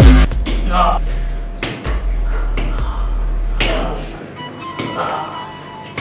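Electronic dance-style music with heavy bass cuts off just after the start. A film soundtrack follows: a low drone that drops away about four seconds in, with scattered sharp hits and short bursts of voice.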